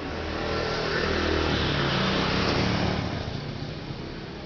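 A motor vehicle passing by: its engine sound swells over the first second and a half, holds, then fades away toward the end.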